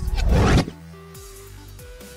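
A short, loud whoosh transition effect that rises in pitch and cuts off about half a second in, followed by soft background music with steady held notes.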